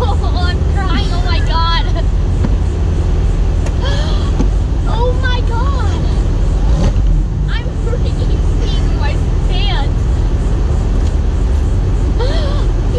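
Porsche 911 Targa 4 GTS's twin-turbo flat-six engine idling with a steady low rumble, with excited, wordless voices over it.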